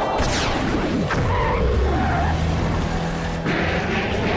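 Cartoon action sound effects: a whoosh near the start and a vehicle-like engine and skid sound, over background music.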